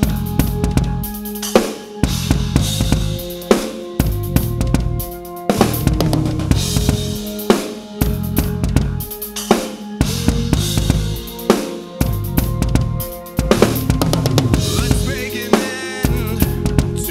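DW acoustic drum kit played along to a backing track in a driving rock groove. Kick drum and snare hits run constantly, with a loud accent about every two seconds, over the track's pitched bass and synth notes.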